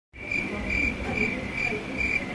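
A cricket chirping, one high, even chirp about every half second, over a low background rumble.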